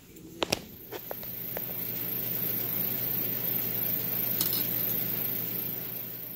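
Vintage electric sewing machine running under the foot pedal as it stitches a seam, with a steady motor hum and needle clatter. A couple of clicks come first, then the machine starts about a second in, builds up and eases off near the end.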